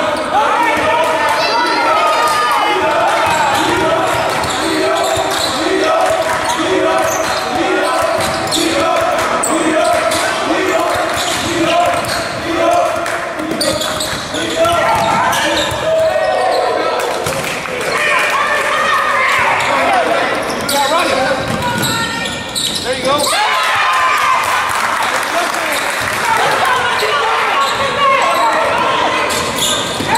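A basketball bouncing on a hardwood gym floor during play, repeated dribbles and impacts among people's voices in a large echoing hall.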